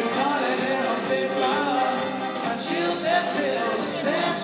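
Live band playing acoustic guitars and a snare drum, with a male voice singing over them.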